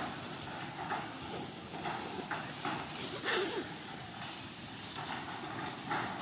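Macaques moving on a corrugated metal roof: scattered soft taps and a sharp knock about three seconds in, over a steady high-pitched whine.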